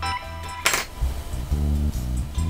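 Background music with a guitar and bass line in a steady rhythm, and one sharp hit about two-thirds of a second in.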